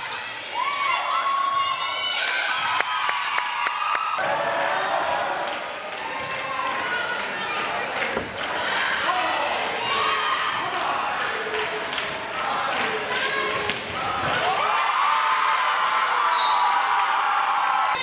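Volleyball rallies in a gym: the ball being struck and bouncing on the court, sneakers on the hardwood, and players and spectators calling out and cheering. The sound changes abruptly twice as play cuts from one match to the next.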